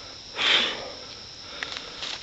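A man's single short sniff through the nose, about half a second in.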